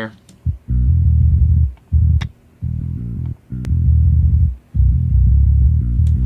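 Sampled bass guitar DI (Submission Audio EuroBass) playing a low metal bass line alone, in short phrases with brief gaps. Everything above about 160 Hz is filtered off and the low end is boosted around 60 Hz by a sub-bass filter, so only deep notes are left.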